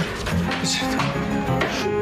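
Background music with short, repeated bass notes.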